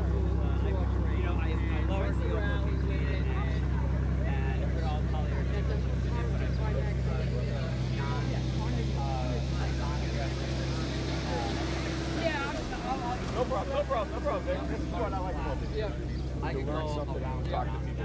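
A steady low engine hum runs under indistinct background voices of people talking. The hum thins out about twelve seconds in.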